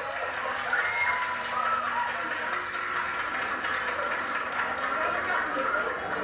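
High-pitched children's voices on a stage, over the steady hiss of an old videotape recording.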